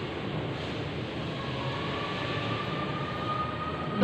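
Steady background noise with no speech: an even hiss and rumble, with a faint thin tone rising slightly in the second half.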